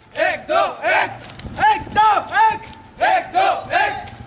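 Men's voices shouting a rhythmic running chant together: short, loud syllables in groups of three or four, with brief gaps between the groups.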